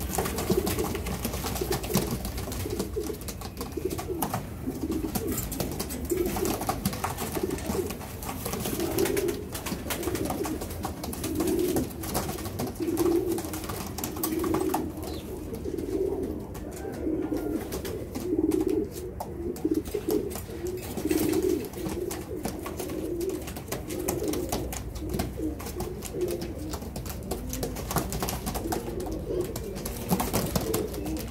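Domestic pigeons cooing in a loft, several birds overlapping in a near-continuous run of low, repeated coos.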